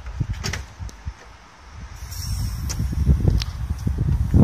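A car's hood being unlatched and lifted open: a few short, sharp clicks and knocks from the latch and the hood panel, spread over a few seconds.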